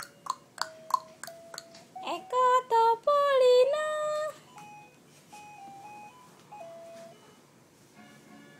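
A high, gliding sing-song voice for about two seconds, then a faint electronic tune of plain held notes stepping between pitches.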